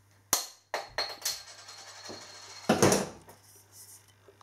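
Handling noise from a freshly opened glass beer bottle and its opener: a sharp click, then scattered knocks and rustles, the loudest about three seconds in.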